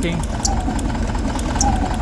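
Air-cooled VW Beetle flat-four engine on Weber IDF carburettors idling steadily during a cylinder-by-cylinder firing check at the spark plug leads: this cylinder is not firing, typical of a plugged IDF idle jet.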